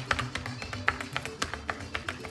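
Shoes tapping out a quick zapateado on a concrete patio, many sharp taps a second, over recorded Mexican string music with a steady beat.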